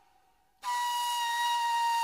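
A flute in an ilahi's instrumental part: after a brief near-silent gap, a long note starts about half a second in and is held steady.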